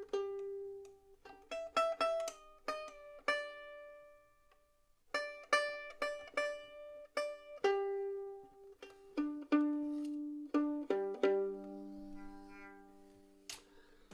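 Fiddle strings plucked one at a time and in pairs while the player retunes, each note ringing and fading, with a short pause partway through.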